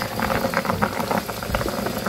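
Water at a rolling boil in a cooking pot with saba bananas in it, bubbling and popping in a steady crackle.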